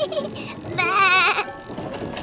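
A cartoon child character laughing, with a strongly quavering, bleat-like laugh about a second in, over soft background music.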